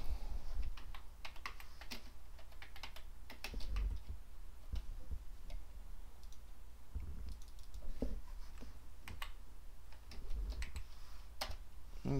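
Typing on a computer keyboard mixed with mouse clicks, as irregular short key presses and clicks coming in a few bursts.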